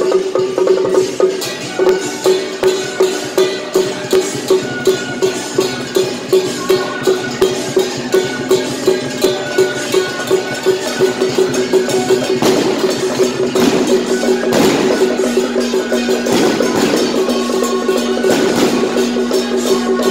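Taiwanese temple-procession percussion: drum and gongs beating a steady pulse of about two strokes a second, with a ringing gong tone under each stroke. In the second half the beat turns into a denser, busier clatter.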